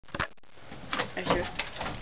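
A single sharp knock right at the start, then faint, low, indistinct talking.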